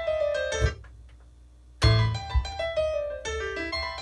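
Piano playing a melodic phrase that breaks off less than a second in. After a lull of about a second it comes back in with a low bass note and plays on.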